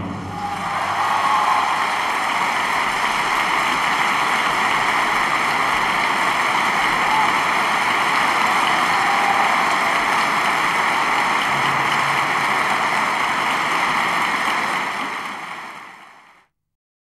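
Concert audience applauding steadily right after an opera aria ends, with a few brief shouts over the clapping; the applause fades out near the end.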